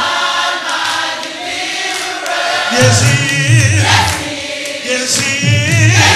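Live gospel music: a man singing into a microphone with other voices joining in, over a low accompaniment that comes in about three seconds in.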